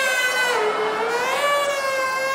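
A man's voice holding one long, high wavering note into a hand-cupped microphone, the pitch sagging about half a second in and rising again. It is a comic vocal imitation of a post-office clerk's garbled voice through the counter microphone.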